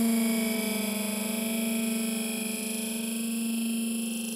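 Hard trance breakdown: a sustained synthesizer chord held without drums, slowly getting quieter.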